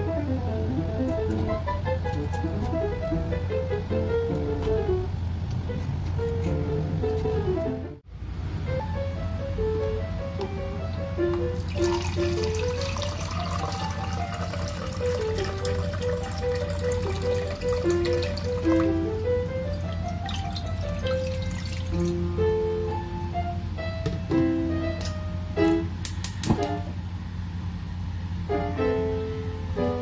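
Background music with a steady melodic tune. Partway through, water is poured from a plastic measuring cup into a cooking pot.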